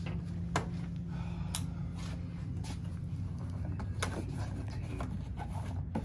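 Light handling noises, a few scattered sharp clicks and rustles, as a cardboard box is moved about on a glass counter and scissors are brought to its tape, over a steady low hum.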